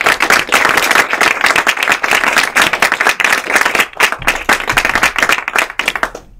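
Audience applauding: a dense run of hand claps that stops abruptly near the end.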